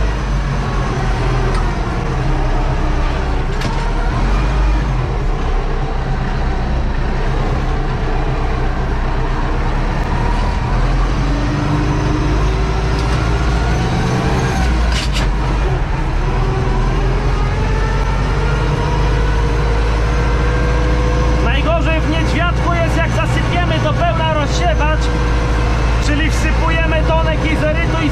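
Tractor engine running steadily under load, heard from inside the cab as the tractor drives across the field. A faint whine rises slowly in pitch over the second half.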